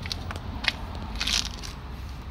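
Handling noise from a handheld camera being moved: a few light clicks and a brief rustle, over a steady low rumble.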